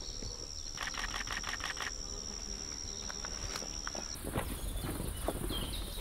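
An insect's steady, high-pitched buzz over quiet forest background, cutting off abruptly about four seconds in. A quick run of faint clicks comes about a second in.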